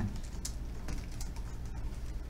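Typing on a computer keyboard: a run of light, irregularly spaced keystroke clicks as a few words are typed.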